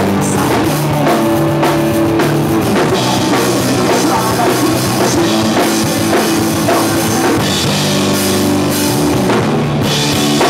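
Punk rock band playing live: electric guitar, electric bass and a drum kit, loud and steady, with held bass and guitar notes changing every second or two.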